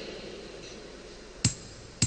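Quiet low room hum with a single sharp click, ringing briefly, about a second and a half in.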